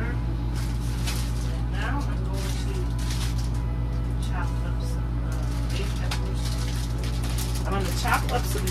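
A steady low machine hum throughout, with a faint voice heard briefly now and then and scattered light knocks.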